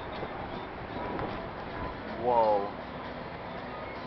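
A short voiced sound from a person, falling slightly in pitch, about two seconds in, over steady outdoor background noise.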